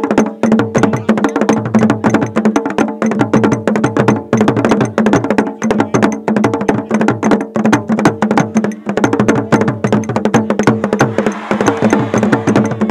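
Traditional Ghanaian percussion music for a cultural dance. Many fast, dense strikes on drums and a wood-block-like instrument, without a break.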